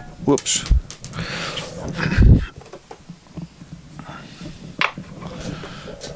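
Small aluminium machine parts handled on a wooden workbench: scattered light metal clinks and knocks, with a dull thump about two seconds in and a sharp click near the end.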